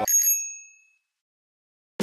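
A short, high bell-like ding that rings out and fades away within about half a second to a second, followed by dead silence: a chime sound effect added in the edit.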